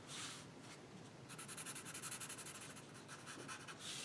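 Faint scratch of a felt-tip marker drawing lines on paper: a short stroke at the start, then a longer stroke from about a second in to about three seconds.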